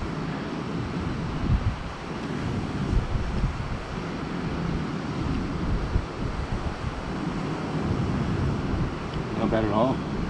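Wind buffeting the microphone over the steady wash of the sea, with a voice coming in just before the end.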